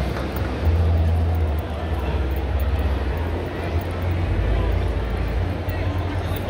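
A steady low rumble that grows louder about a second in, under the background chatter of a crowd.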